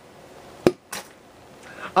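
A single sharp pop from a stiff plastic squeeze-toy alligator foam-ball shooter as it is squeezed to fire a foam ball, followed about a third of a second later by a softer knock.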